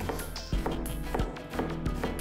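A kitchen knife slicing halved leek on a cutting board: three short taps about two-thirds of a second apart, over background music.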